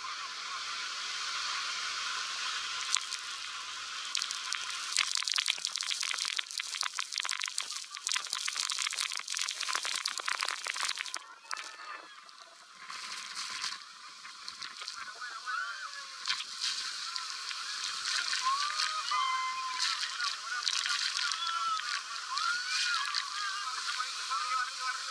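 Waterfall spray and splashing water pounding onto an open tour boat: a dense crackle and hiss of drops hitting the microphone that eases off about eleven seconds in. From about fifteen seconds in, drenched passengers shriek and whoop over the water noise.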